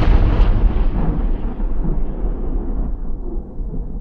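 The long, deep rumbling tail of a cinematic boom impact sound effect, fading slowly.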